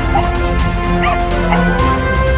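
A Croatian sheepdog barking a few times while working sheep, over steady background music.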